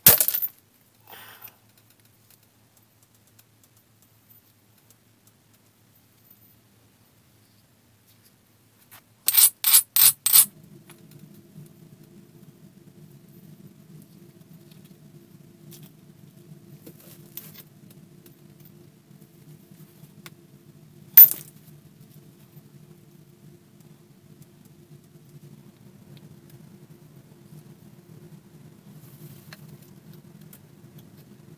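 Copper-tipped billet blows on a Keokuk chert preform: a sharp, ringing strike at the start and another about twenty-one seconds in. Between them, about nine seconds in, comes a quick run of five light clicks, and soon after a faint, steady low hum starts.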